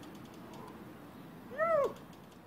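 A single short meow-like call about one and a half seconds in, rising and then falling in pitch, over faint background noise.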